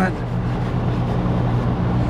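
Outdoor central air-conditioning condensing unit running: a steady compressor hum under the even rush of the condenser fan.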